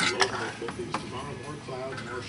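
Faint talk from a radio in the background, with a few sharp clicks near the start and about a second in.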